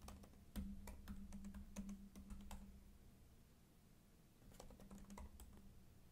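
Faint typing on a computer keyboard: a run of quick key clicks for about two and a half seconds, a pause, then a few more keystrokes near the end.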